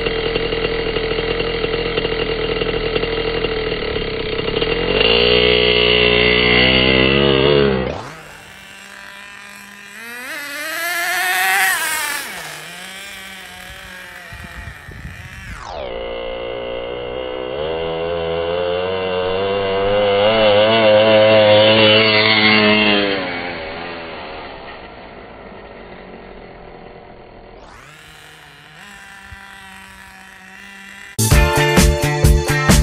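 Traxxas Nitro Rustler RC truck's Pro.15 two-stroke nitro engine running: steady at first, then revving up in a rising whine. Its pitch climbs and falls as the truck drives off and back, and near the end it fades to a faint, distant running.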